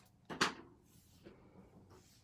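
Small craft scissors cutting through card stock once: a short sharp snip about half a second in, trimming off an overhanging edge.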